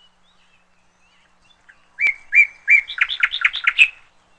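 A songbird singing: starting about halfway in, three clear high notes followed by a faster run of about seven notes.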